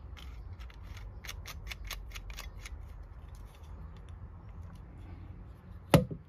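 Small plastic clicks from a Klein Tools coax cable tester being handled as a small black part is fitted to it: a quick run of ticks that thins out after about three seconds, over a low steady rumble. A single sharp, louder click comes just before the end.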